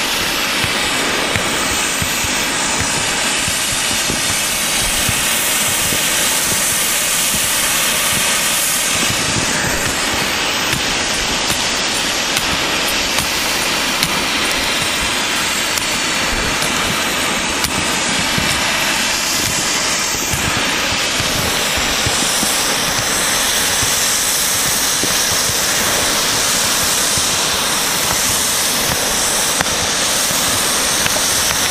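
Strong wind blowing over the camera microphone in a snowstorm: a loud, steady rushing that hardly changes.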